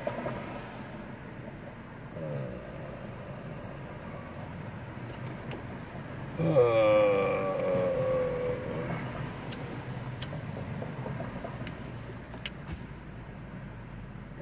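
Steady low hum inside a car idling at a traffic light. About six seconds in, a voice gives a long, drawn-out "uh" that falls slightly in pitch, and a few faint clicks follow.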